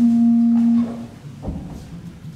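A single low note held steadily on a small positive (chamber) organ for just under a second, then released.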